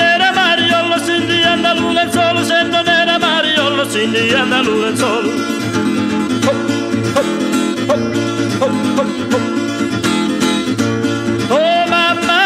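A Calabrian sung tarantella: a singer's voice over a lively folk band with plucked strings and a steady percussive beat. The voice drops out about five seconds in for an instrumental stretch and comes back just before the end.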